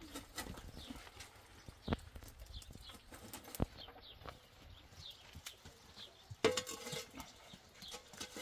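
A metal fire shovel scraping and knocking against stone and ash while embers are raked in an open hearth, giving a few scattered sharp knocks.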